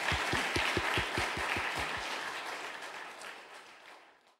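Audience applauding, with regular low claps about five a second for the first two seconds; the applause fades away over the last two seconds.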